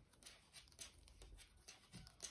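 Faint, irregular soft ticks and rustling of wooden-tipped knitting needles and wool yarn as stitches are purled.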